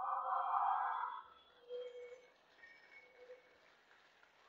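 A congregation answering the preacher aloud all together, heard faintly from a distance. Their response swells and dies away within the first second and a half, followed by a couple of faint brief sounds.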